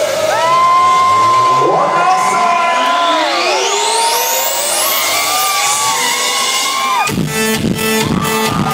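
Live electronic music in a breakdown: long held synthesizer tones and rising sweeps with the bass and drums dropped out, over a cheering crowd. About seven seconds in, the kick drum and bass come back in with a pounding beat.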